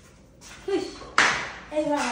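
A single sharp hand smack, a clap or slap, about a second in, ringing briefly in a bare room, between short bits of speech.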